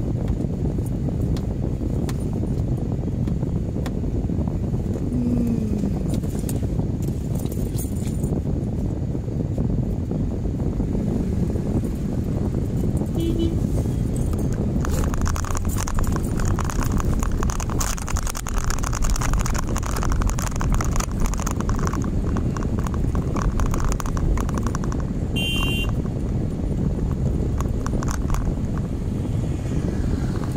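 Steady low rumble of a car's engine and road noise, heard from inside the cabin as the car waits in traffic and then drives off among motorcycles. From about halfway through, a rougher rattling hiss joins for about ten seconds, with a short high tone near its end.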